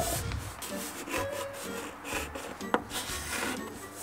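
Chalk writing on a chalkboard: scratchy, rubbing strokes broken by a couple of sharp taps as the numerals are drawn.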